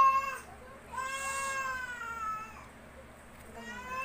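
A cat meowing three times: a short meow at the start, a long drawn-out one about a second in, and a third near the end.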